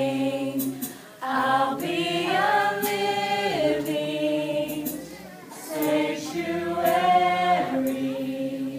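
A group of men and women singing a hymn together in long held notes, the phrases breaking briefly about a second in and again about five seconds in.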